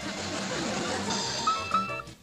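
Cartoon soundtrack music with a whirring spin sound effect as the robot spins. In the second half come short, high, held notes.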